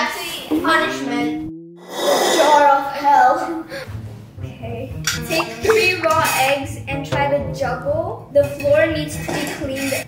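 Children's voices and exclamations over background music with a steady beat.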